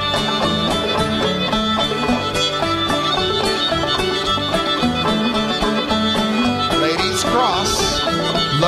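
Live string band playing a contra dance tune, fiddle to the fore over a steady beat.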